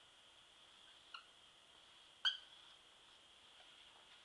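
Dry-erase marker squeaking on a whiteboard as a stroke is drawn: two short squeaks about a second apart, the second one louder.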